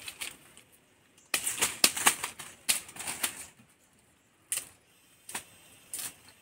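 Crackling rustle of stiff pineapple leaves and stems being handled, in a dense run of bursts for about two seconds, then a couple of single snaps.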